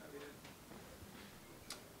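Very quiet room tone with a brief faint voice early on and one sharp click a little before the end, from equipment being handled at the lectern.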